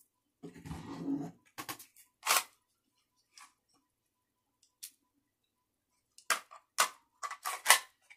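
Handling noise from a semi-automatic pistol being picked up and handled: a rustle, a few sharp clicks and knocks, a quiet spell, then a quick run of clicks near the end.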